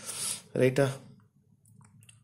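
A man's short breathy sound and a brief spoken syllable in the first second, then a few faint clicks from the pencil and rolling parallel ruler on the drawing sheet.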